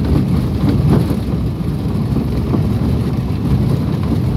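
Steady low rumble of wind buffeting the microphone and road noise from a moving vehicle, with no distinct engine note.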